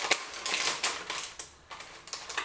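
Small plastic or foil packet crinkling and crackling as it is handled and pulled open by hand, in quick irregular crackles that die down near the end.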